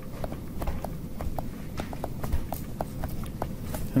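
Stylus pen tapping and clicking on a tablet screen during handwriting: an irregular run of light clicks, several a second, over a low background hum.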